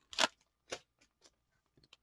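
Trading cards being slid out of a torn-open foil pack and handled: a few brief, crisp clicks and crinkles, the loudest just after the start.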